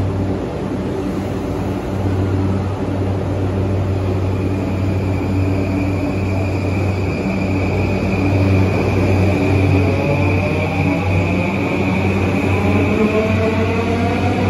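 Yamanote Line E235-series electric train setting off: over a steady low hum, the traction motor inverter whine starts about nine seconds in as several tones that rise steadily in pitch while the train accelerates.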